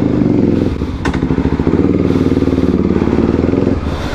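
Sport motorcycle engine running while ridden slowly at low revs, its pitch shifting a little. A single sharp click comes about a second in.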